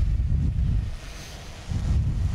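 Wind buffeting a microphone: two low rumbling gusts, one over the first second and another near the end.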